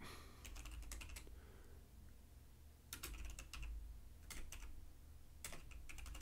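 Faint typing on a computer keyboard, a few short runs of keystrokes with pauses between them.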